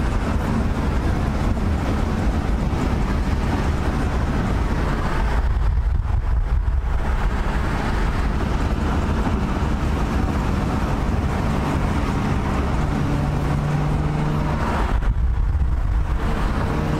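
Inside the cabin of a BMW M2 driving at highway speed: a steady engine drone from its turbocharged inline-six under road and tyre rumble.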